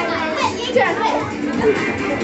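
Lively, overlapping voices of children and young people, shouting and chattering over music playing for dancing.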